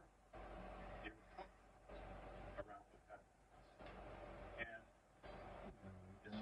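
Near silence, with faint handling noise and a few light metal clicks as Allen wrenches are worked on the compound bow's hardware in the bow press.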